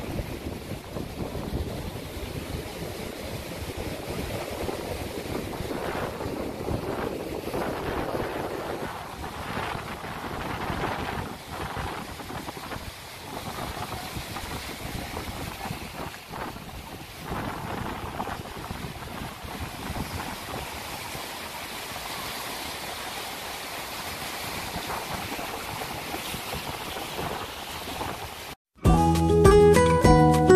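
Ocean surf rushing and breaking among rocks on a beach, a steady wash that swells and eases, with wind buffeting the microphone.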